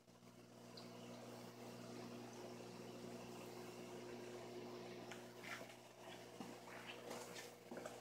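Faint, steady hum of a small aquarium pump with soft bubbling water: the BioCube skimmer pump driving a wooden air stone that fills the tank with micro bubbles.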